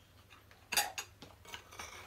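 Fork and chopsticks clinking against bowls while eating: several short clinks, the loudest about three-quarters of a second in.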